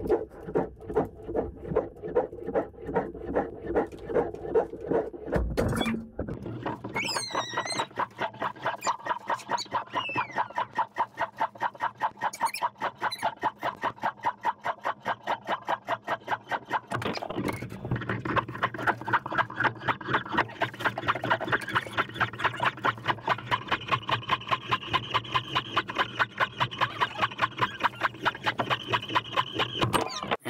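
20-lb KastKing Durablend nylon monofilament being pulled back and forth across a submerged coarse abrasive block, a rhythmic rubbing squeak at about two to three strokes a second that quickens somewhat in the second half. Each stroke wears the line down in an abrasion test that runs until the line breaks.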